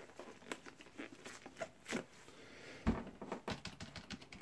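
Scattered light clicks and taps of gloved fingers on a Compaq PC keyboard's keys, with one heavier knock nearly three seconds in.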